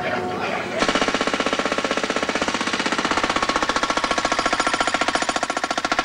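Pneumatic jackhammer breaking up concrete pavement. It starts about a second in with a fast, even rattle of blows that keeps up steadily.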